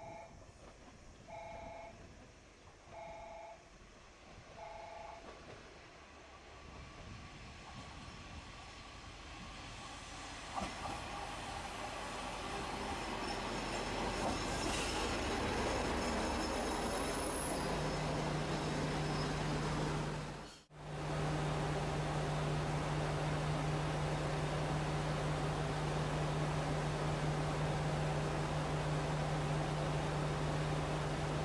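JR Shikoku diesel railcar approaching and pulling into the station, its sound growing steadily louder over about ten seconds, then settling into a steady low engine hum while it stands at the platform. Four short two-tone beeps, about a second and a half apart, sound in the first few seconds.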